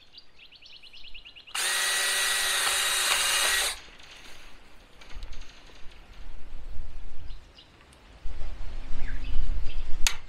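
Cordless drill running steadily for about two seconds, boring a hole through black poly pipe, just after a brief run of rapid clicks. Low rumbling noise comes in the second half.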